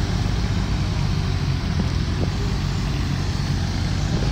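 Engine of a small Giant wheeled mini loader running steadily as the machine drives over loose dirt.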